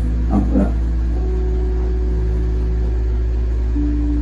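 Slow background score: a steady low drone under long held notes, the upper note stepping to a new pitch about a second in and again near the end. Two short vocal sounds come about half a second in.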